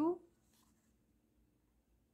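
Faint, brief scratch of a needle and thread drawn through grosgrain ribbon while hand-sewing a basting stitch, about half a second in.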